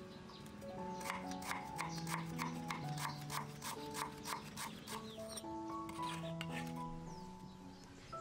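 A knife chopping on a round wooden chopping block, about three even strokes a second from about a second in until about five seconds, with a few more strokes near six seconds, over background music.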